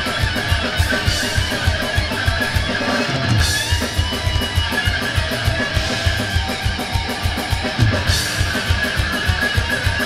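A live thrash metal band playing: distorted electric guitars over a rapid, driving kick-drum beat, with cymbal crashes about three seconds in and again near eight seconds.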